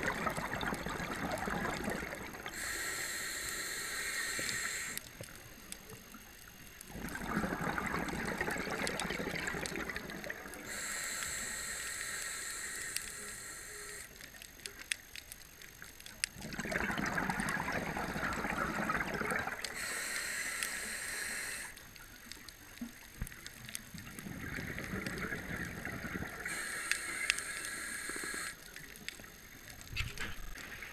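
Scuba diver breathing through a regulator underwater: a hissing inhale through the demand valve alternating with a burst of bubbling exhaled air, about four slow breaths.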